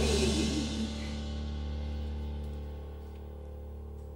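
Live pop band holding a sustained chord that rings out and fades: a low bass note held under a decaying cymbal wash, with the last of a sung line trailing off at the start.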